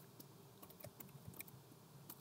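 Faint computer keyboard typing: a run of light, irregularly spaced key clicks.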